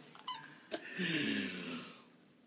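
A man's drawn-out wordless vocal cry, about a second long and gliding slightly down in pitch, after a brief sharp click near the middle.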